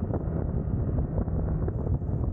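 Wind buffeting the microphone of a motor scooter riding at about 40 km/h: a loud, uneven low rumble, with the scooter's engine running faintly underneath.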